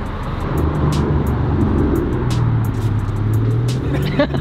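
A motor vehicle engine running close by, a low steady hum.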